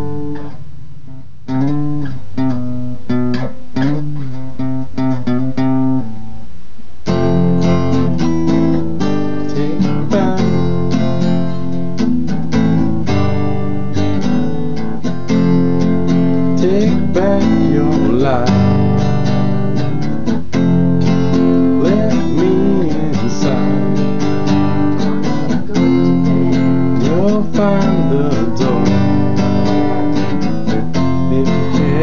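Acoustic guitar with a capo, played as an instrumental passage: lighter and sparser for the first several seconds, then fuller and busier from about seven seconds in.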